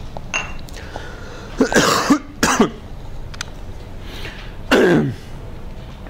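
A man coughing: two quick coughs about two seconds in, and another cough or throat-clear near the end.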